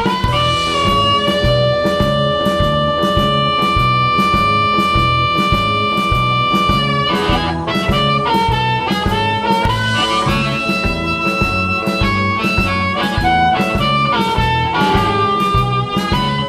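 Amplified harmonica played through a JT30 bullet microphone and a Fuhrmann Analog Delay pedal, over a backing track with a steady bass and drum beat. It holds one long note for about six seconds near the start, then plays shorter phrases.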